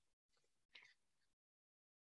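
Near silence in a pause between speech, with the sound cutting to dead silence about halfway through.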